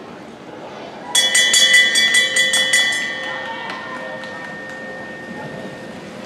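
Trackside lap bell rung rapidly, about ten quick strikes over two seconds, its ringing then fading away over the next few seconds: the bell marking the last lap of the race.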